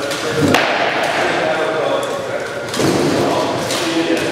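Rattan sword and polearm blows striking a shield and armour. There is a sharp crack about half a second in and a heavier thudding blow near three seconds, both echoing in a bare, hard-walled court.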